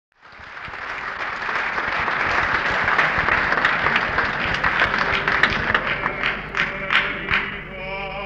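Audience applauding, swelling up and then thinning out to a few scattered single claps towards the end. Piano notes begin just as the clapping dies away.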